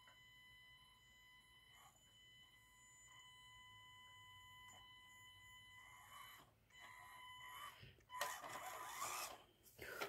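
Panda Hobby Tetra K1 micro RC crawler's electric motor and drivetrain at very low throttle. There is a faint steady high whine at first, then the running noise builds from about six seconds in as the truck creeps forward, loudest near the end.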